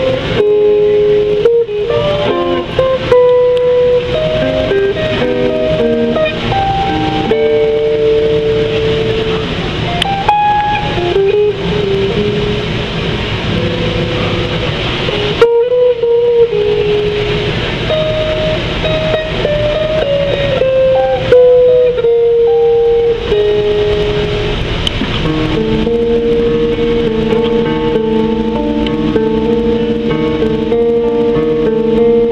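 Solo hollow-body electric guitar played through a small amplifier, picking melodic single-note lines; in the last few seconds it moves to held, ringing chords.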